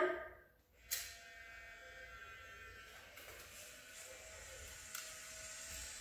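Fujifilm Instax Mini 9 instant camera: the shutter clicks about a second in, then the camera's motor whirs faintly and steadily as it ejects the print.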